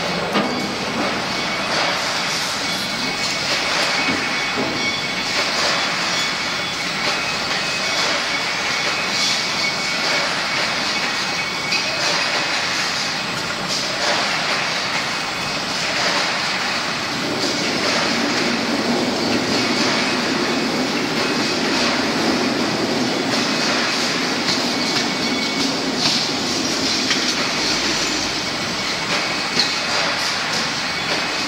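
Steel wire hanger PE powder coating machine running: a steady, dense metallic clatter with a hiss as coated wire hangers are carried along the conveyor and drop onto the pile. A low hum joins a little past halfway.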